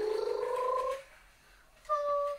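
Creaky chair creaking: a long, rising, rasping squeak that stops about a second in, then a shorter steady squeak near the end.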